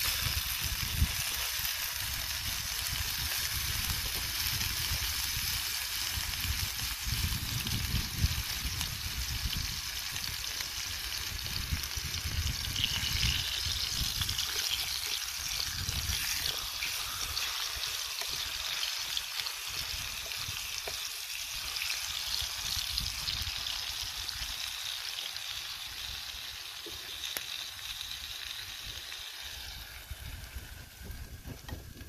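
Food sizzling in a frying pan set on the embers of a wood campfire: a steady hiss that eases off near the end as the pan comes off the heat.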